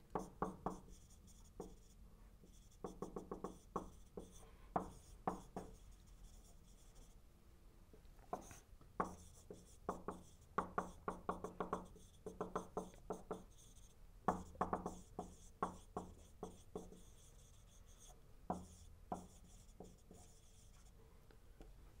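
Marker writing on a whiteboard: clusters of quick taps and short strokes, word by word, with brief pauses between them.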